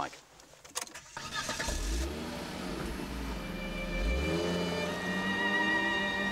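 A Volvo C70's five-cylinder engine starting and running, a low rumble that is strongest for the first couple of seconds after it catches. Background music fades in alongside it.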